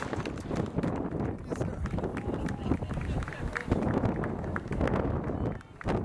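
Wind buffeting the camcorder microphone in uneven gusts, with faint voices of people nearby underneath.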